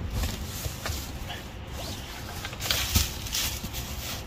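Rustling and shuffling of clothing and bags as gloved hands dig through a box, with a short knock about three seconds in.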